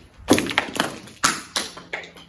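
Footsteps crunching and knocking on a concrete floor strewn with small debris, about five sharp, uneven steps.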